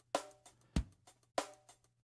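Sampled drum loop played back from a Roland SP-404 MkII pad, pitched up about seven semitones by running it at 150% speed, so it sounds higher and faster. It is a sparse, fairly quiet beat with three main hits, each carrying a brief ringing tone, plus lighter hits between them.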